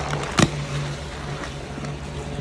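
A sponge soaked in thick pink Pine-Sol (Pinalen) soap paste squelching as a hand squeezes it, with two sharp wet pops close together near the start. A steady low hum runs underneath.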